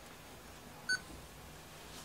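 A single short electronic beep from a small Canon camcorder, about a second in, over a faint steady room background.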